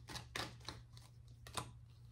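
Tarot cards being drawn from the deck and laid down on a table: a few faint, light clicks and taps, spread unevenly over two seconds.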